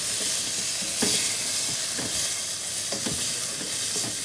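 Beef chunks sizzling as they fry in a nonstick pot, stirred with a wooden spatula that scrapes the pan about once a second.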